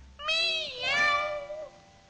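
A cartoon cat meowing twice. The second meow is longer and falls in pitch.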